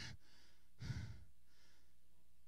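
A man's breath into a close handheld microphone during a pause in speech, one audible sigh-like breath just under a second in.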